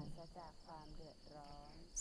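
Crickets chirping steadily in a high, even trill, with faint voices chanting a line of the recitation under it.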